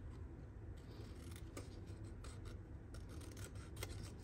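Small craft scissors snipping through a scrap of stamped white card: several faint, short snips at an irregular pace.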